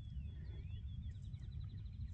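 Faint distant bird calls: a few short high chirps, then a rapid trill in the second half, over a low steady outdoor rumble.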